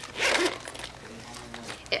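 A zipper on a small cosmetic bag pulled open in one short rasp lasting about half a second.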